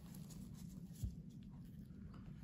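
Faint room tone with a steady low hum, light handling sounds of metal forceps against a small plastic cup, and one soft tap about a second in.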